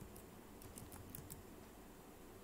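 Faint keystrokes on a computer keyboard: a handful of quick, separate taps as a command is typed and entered.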